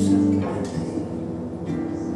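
Live Brazilian samba band playing without singing: nylon-string acoustic guitar and electric bass, with a few short percussion strokes.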